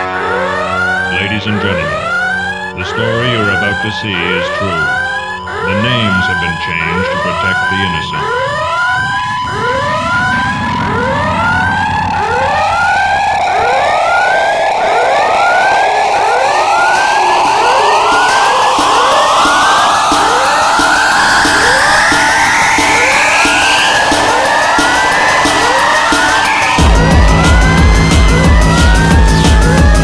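Tekno track in a breakdown: short siren-like rising sweeps repeat about one and a half times a second over a long tone that slowly climbs in pitch. The kick drum comes back in near the end.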